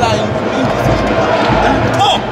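Football spectators' voices calling out over the general noise of a stadium crowd, with low thudding underneath.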